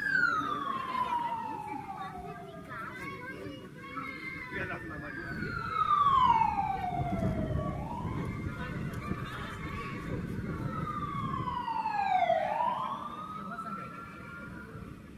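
Siren wailing in long slow sweeps: three times the pitch falls over about three seconds and then climbs again, with low crowd noise beneath.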